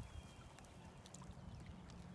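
Faint sound of river water moving along a muddy bank, over a low steady rumble.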